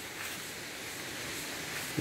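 Soft, steady rush of a waterfall, an even hiss with no breaks.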